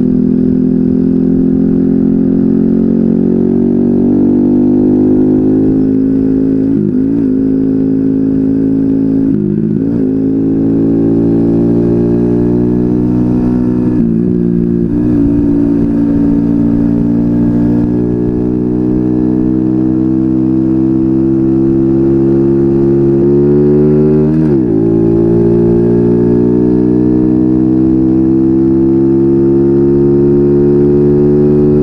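Small four-stroke moped engine running under way, its pitch climbing slowly, with brief sharp dips in pitch that come back up four times.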